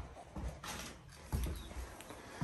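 Baby chicks peeping faintly now and then, under a few soft bumps and a brief rustle of handling.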